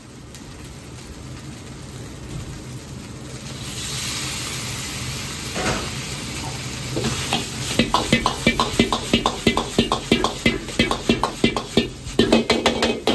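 Fried rice sizzling in an iron wok over a gas wok burner. The sizzle grows louder about four seconds in as braised beef chunks go into the hot oil. From about seven seconds, a metal ladle scrapes and knocks rapidly against the wok as the rice is stir-fried.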